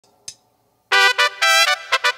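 Electronic keyboard playing a trumpet-like brass melody, a quick run of separate notes that starts about a second in after a single faint click.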